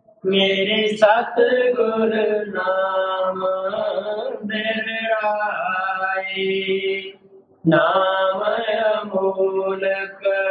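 A voice chanting devotional hymn verses in a slow, drawn-out melody, pausing briefly about seven seconds in.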